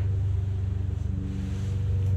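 Steady low electrical hum with a buzzy stack of overtones, unchanging throughout.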